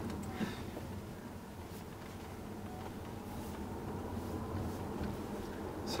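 Cabin noise inside a Tesla Model S electric car driving slowly on a local road: a steady low road and tyre rumble, with a faint whine rising in pitch as the car picks up speed.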